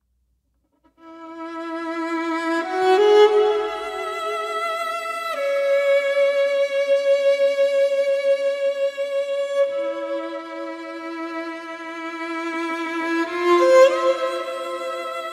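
Violin playing a slow melody of long held notes with vibrato, entering about a second in and moving to a new note every few seconds.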